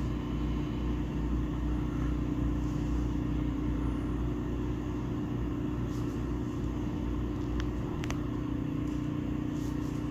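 Steady low mechanical hum and rumble, with a couple of faint clicks about three-quarters of the way through.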